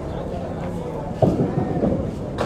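Candlepin bowling alley din: a steady low rumble of balls rolling on the wooden lanes, with a sharp knock about a second in followed by a rolling clatter.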